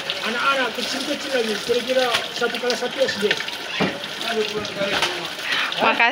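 A man talking over a steady rushing background noise, with a single short knock just before four seconds in.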